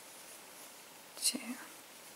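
One softly spoken counting word, "two", about a second in, over a faint steady hiss of room tone.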